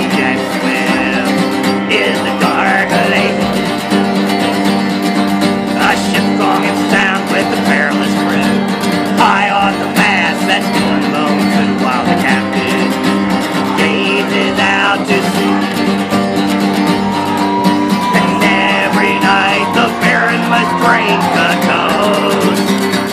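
Acoustic guitar strummed in a steady chord rhythm, an instrumental passage between the sung verses of a ballad.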